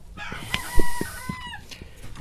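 A rooster crowing, one drawn-out call of about a second and a half. Over it come clicks and a sharp knock from the wooden coop door and its sliding bolt latch.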